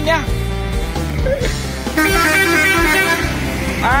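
A coach's multi-tone 'telolet' horn sounds a short stepped melody from about halfway in, as a greeting while it passes. Background music with a steady bass line runs underneath.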